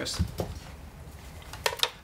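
A guitar cable being handled and its jack plug repatched at the amp and pedal: a soft thump just after the start and two sharp clicks near the end.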